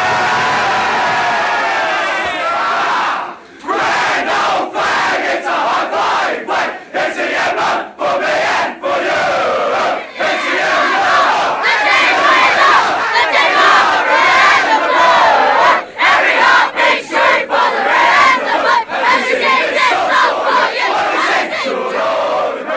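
A team of Australian rules footballers singing their club song together, arm in arm, as a loud, shouted chorus of many voices with no accompaniment. Men's voices come first and boys' later, with a few abrupt breaks between the groups.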